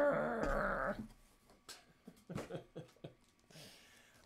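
A long, drawn-out vocal sound, wavering in pitch, that trails off about a second in, followed by a few faint clicks and rustles of handling.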